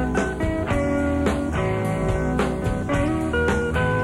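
A rock band playing live in a radio studio, with electric guitars over bass and drums in a steady beat. It is heard off an FM broadcast taped to cassette.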